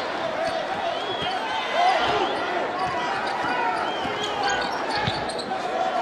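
Arena crowd murmur during live basketball play, with a basketball bouncing on the hardwood court a few times.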